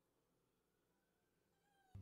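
Near silence, with only a very faint thin rising whine in the second half.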